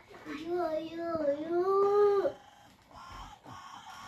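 A young child's drawn-out whining cry, one long wordless vocal sound lasting about two seconds and rising slightly in pitch.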